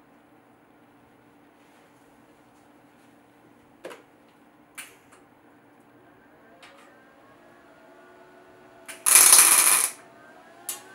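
Millermatic 211 MIG welder laying a short tack weld on thin steel: one loud burst just under a second long near the end. Before it, a couple of light metallic clicks as the steel stem is set in place on the pumpkin.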